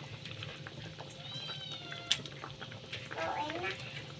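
A pan of seafood in sweet-and-sour sauce cooking quietly, a low steady background. A faint, high, slightly falling call comes about a second in, a single click at the midpoint, and a short faint voice-like sound near the end.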